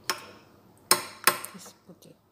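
A metal spoon clinking against a ceramic bowl three times as yogurt is spooned in, the second and third clinks sharpest.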